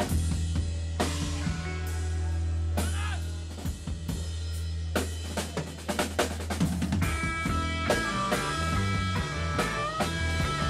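Live rock band playing: drum kit, sustained bass notes, electric guitar and keyboard. A quick run of drum hits comes about five seconds in, after which held guitar and keyboard notes come forward.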